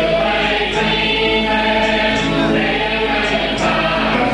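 A choir singing a church hymn with long held notes.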